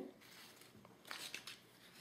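Near silence with a few faint rustles about a second in, from craft ribbon being handled.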